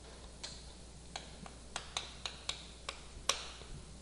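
Chalk clicking and tapping against a chalkboard while writing a few characters: about ten sharp ticks spread over three seconds, the loudest near the end.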